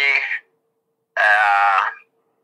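A man's voice drawing out two long syllables, hesitating on an 'ah', with a faint steady tone under it.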